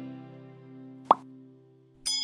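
Fading guitar music with one short, sharp pop sound effect about a second in, the click sound of an animated like button.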